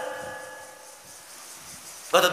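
A pause in amplified speech: the preacher's last words ring on through the loudspeakers and die away over about a second, leaving only faint background hiss.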